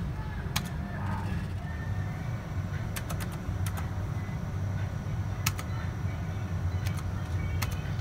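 Video poker machine buttons being pressed: about six sharp clicks, irregularly spaced, as cards are held and a new hand is dealt. Under them runs a steady low rumble.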